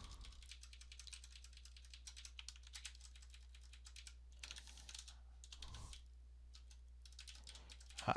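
Faint typing on a computer keyboard: quick, irregular runs of key clicks as a line of code is entered.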